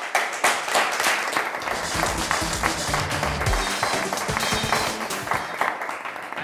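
A studio audience applauding, many hands clapping together, with music and its bass line coming in under the clapping about a second and a half in.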